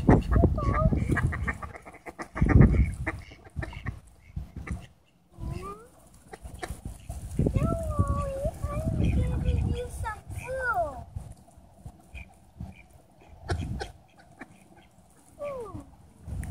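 A flock of mallard ducks quacking and calling at close range as they crowd in for food, with runs of short quacks and some drawn-out gliding calls.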